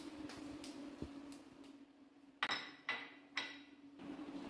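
Three ringing clinks of ceramic crockery on a stone tabletop, about half a second apart, over a faint steady hum.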